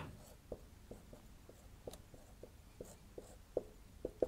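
Whiteboard marker writing on a whiteboard: a dozen or so short, faint, irregular strokes and taps as an expression is written out.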